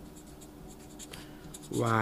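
Marker pen writing on paper: a run of short, faint scratching strokes as letters are formed. A man's voice starts near the end.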